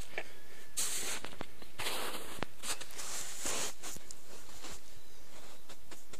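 Footsteps crunching over snow and thawing ground: three crisp crunches about a second apart, with small clicks and rustles between them.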